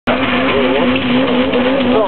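Drag car's engine held at steady high revs with its tyres squealing, as in a burnout at the start line.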